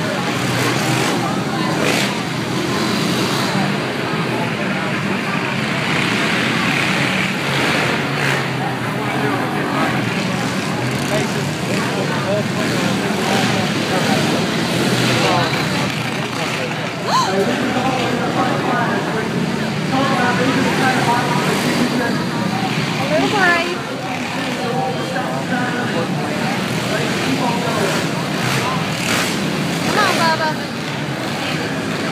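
Several four-stroke dirt bike engines running and revving in a race, mixed with crowd voices throughout.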